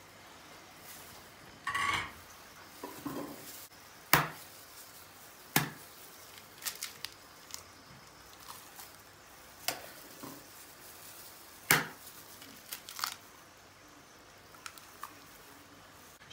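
Two raw eggs being cracked and opened over a bowl of cooked spaghetti: several sharp taps of eggshell, with faint crinkling of a plastic food-prep glove between them.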